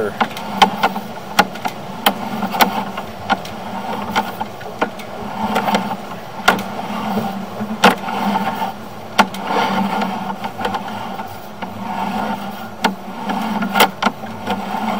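Sewer inspection camera's push cable being pulled back through the line, with frequent sharp clicks and knocks over a steady low hum.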